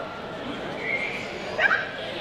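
Border collie giving two short, high yips as it runs out, the second one louder.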